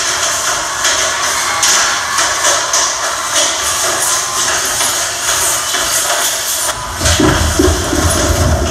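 Loud arena PA audio recorded on a phone, with music under a dense rushing, rustling noise; the deep bass drops away for most of the stretch and comes back strongly about seven seconds in.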